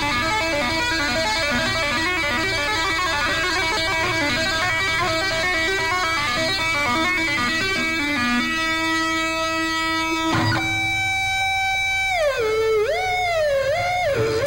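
Distorted electric guitar solo: fast tapped runs of quickly repeating notes for about eight seconds, then a long held note. A sharp attack comes about ten and a half seconds in, and near the end a sustained note dips and swoops in pitch.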